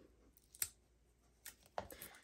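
Fingers picking at the backing liner of double-sided Tear & Tape adhesive on patterned paper, making a few faint, short clicks, the sharpest about half a second in and two more close together near the end.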